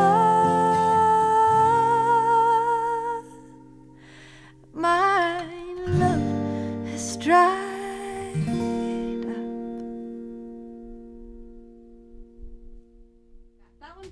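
Closing bars of a song on solo female voice and Breedlove acoustic guitar: a long held sung note, then a few short sung phrases over strummed chords. The last guitar chord is left to ring and fade away slowly.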